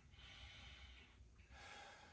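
Faint, slow, deep breathing by a man sitting in meditation: one soft breath lasting about a second, then another starting near the end.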